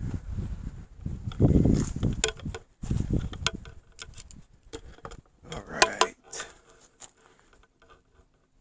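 Wind buffeting the microphone in gusts, followed by a run of small clicks and knocks from handling, which grow sharpest about six seconds in and then fade to quiet.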